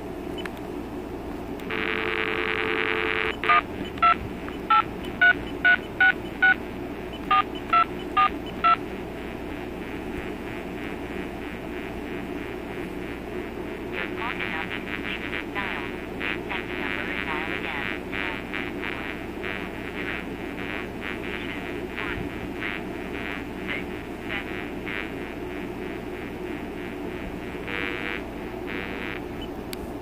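Cordless telephone handset giving a dial tone, then about ten short keypad touch-tones as a number is dialed. After a pause, a recorded time-and-temperature announcement plays faintly through the earpiece.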